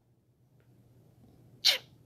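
Near silence, then one short, sharp burst of hissing breath noise from a man, about one and a half seconds in.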